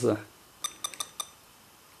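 Four short, sharp clicks with a slight metallic ring in quick succession, starting about half a second in.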